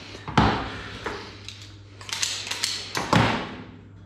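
Several knocks and scuffs as a raw pork shoulder is turned and set on a cutting board and a knife is handled.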